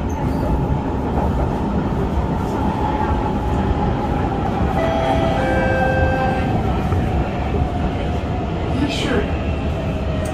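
Kawasaki C151 metro train heard from inside the car as it brakes into a station: the traction motor whine falls slowly in pitch over running rumble from the wheels and rails.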